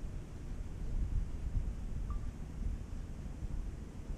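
Wind buffeting the camera's microphone: an uneven low rumble that rises and falls throughout.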